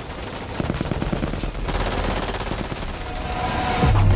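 Automatic gunfire from several rifles. Rapid shots start about half a second in, thicken into a dense, continuous volley, and grow louder toward the end.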